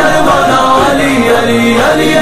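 Devotional chant: several voices singing a refrain over music, holding long notes.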